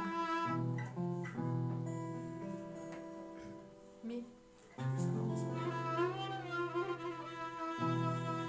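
Violin and acoustic guitar playing a slow instrumental introduction to a song, with long held bowed notes over the guitar. About four seconds in the music dies away almost to nothing for a moment, then the violin comes back in.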